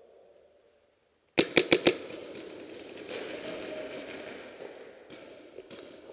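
A paintball marker firing a rapid burst of four shots in about half a second, about a second and a half in, followed by a few seconds of fainter noise.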